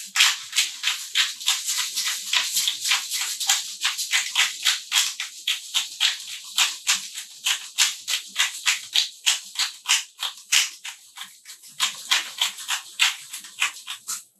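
Hand-twisted pepper mill grinding black peppercorns, a dry crunching rasp repeated about four or five times a second with each turn, stopping at the end.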